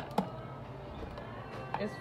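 A sharp clack just after the start as the wire clamp lid of a glass seasoning jar is snapped open, then quiet kitchen background with faint music.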